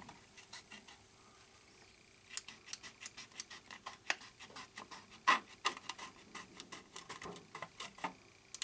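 Scissors cutting a thin sheet of transparent mylar along a fold, a run of short, crisp snips starting about two seconds in and going on irregularly, several a second, with a couple of louder ones around the middle.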